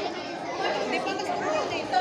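Many people's voices overlapping in chatter, echoing in a large hall.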